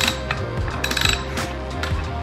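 Ratchet wrench clicking in short runs as it turns the forcing screw of a C-frame ball-joint press, pressing an old bushing out of a car's rear upper control arm. Background music plays underneath.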